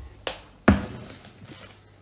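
Two knocks from the filming phone being handled and set in place, a faint one and then a sharper, louder one about 0.7 s in.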